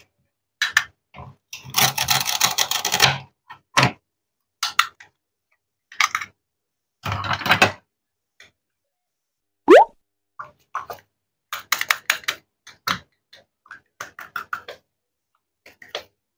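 Plastic and wooden toy fruit being cut and pulled apart with a wooden toy knife on a wooden cutting board: irregular clicks and knocks, with two longer rasping scrapes, one near the start and one about seven seconds in. A brief sharp rising squeak about ten seconds in is the loudest sound.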